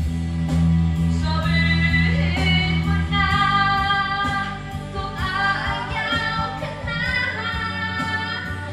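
A woman singing karaoke into a microphone over a recorded backing track, holding long notes.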